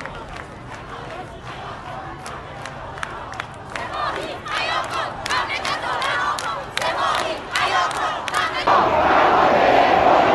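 Large crowd of protesters chanting slogans in unison, with rhythmic hand-clapping about three claps a second, swelling louder from about four seconds in. Near the end the sound changes abruptly to a louder, denser mass of chanting voices.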